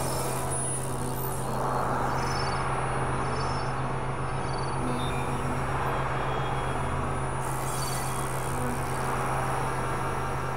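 Dense experimental electronic noise-drone collage, several overlapping tracks mixed together: a steady low hum under a thick rumbling wash of noise that grows brighter about a second and a half in.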